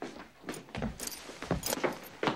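Irregular light clicks and metallic clatter from the film's soundtrack, several a second.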